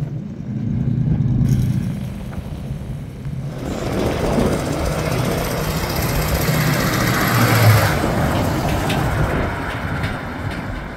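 A hot rod's engine running as it drives slowly past, fading within the first couple of seconds. Then a vintage flatbed car-hauler truck drives by, its engine and road noise building to loudest about three quarters of the way through before easing off.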